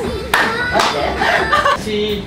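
Two sharp hand claps amid lively talk.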